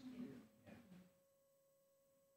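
Near silence: a faint steady hum-like tone in the background, with the last of the voice dying away in the room in the first second.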